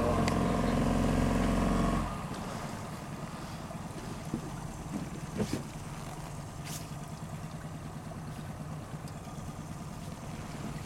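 Boat motor running steadily while the boat is manoeuvred toward a dock; about two seconds in it drops away sharply, leaving only a faint low hum with a few light knocks.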